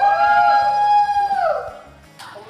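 A person's long, high-pitched vocal cry, held on one note for about a second and a half, then falling away.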